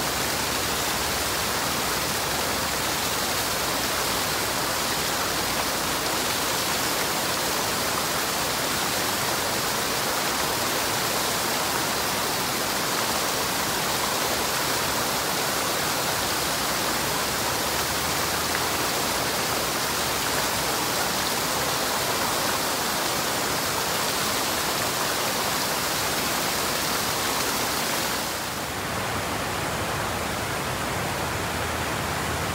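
Water spilling over a low bedrock ledge into a shallow pool, a steady, even rushing splash. Shortly before the end the sound drops a little and becomes the lighter rush of a stream running over rocks.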